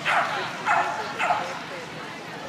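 Shetland sheepdog barking three times in quick succession, short high-pitched barks about half a second apart, each dropping in pitch, while running an agility course.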